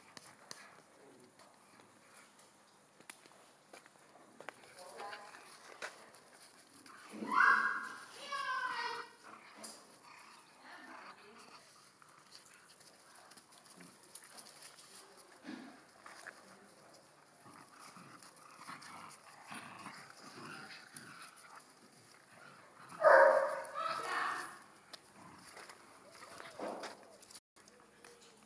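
Small dogs play-fighting, with quiet scuffling throughout and two louder short pitched vocal bursts, about seven and about twenty-three seconds in.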